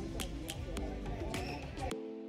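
Voices over background music with a steady, evenly spaced percussive beat, on top of a low outdoor rumble that cuts off suddenly near the end.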